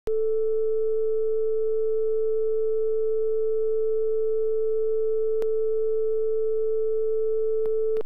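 Steady line-up tone from a videotape leader's colour bars, a single pure pitch held at an even level, with a short click about five and a half seconds in and another near the end.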